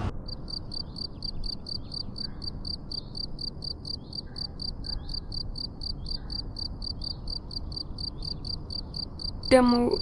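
Crickets chirping steadily at night, a regular high-pitched pulse of about five chirps a second.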